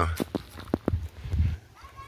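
Footsteps on dry ground: a few short, sharp steps in the first second, then a softer scuff.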